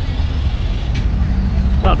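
Steady low rumble with a faint click about a second in.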